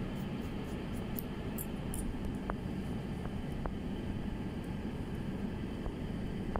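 Steady low hum of room noise, with faint, crisp snips of hair-cutting shears through wet hair repeating during the first two seconds and a few short ticks later on.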